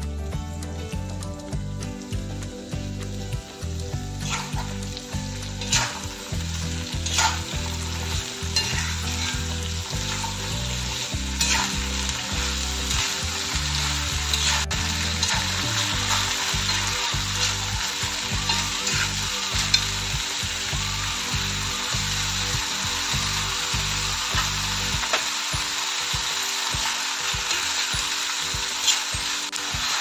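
Chopped banana stem, duck meat and potatoes sizzling steadily as they fry in a cast-iron kadai, stirred with a metal spatula that clicks and scrapes against the pan now and then.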